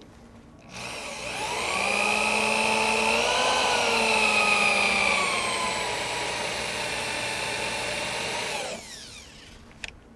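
Handheld electric drill drilling out a spot weld in a 1958 Chevrolet Delray's steel floor pan. It spins up under a second in and runs as a steady whine, its pitch shifting slightly as the bit cuts. It winds down near the end, followed by a small click.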